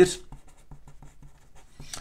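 Marker pen writing a word on paper: a run of faint, quick, irregular strokes.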